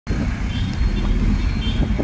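Steady low rumble of a moving road vehicle, heard from inside it as it drives along.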